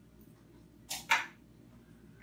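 Quiet room tone broken about a second in by one short, scratchy swish in two quick parts: a brief handling noise at the whiteboard.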